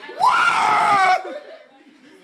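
A person's loud scream, about a second long, whose pitch jumps up and then slowly sinks.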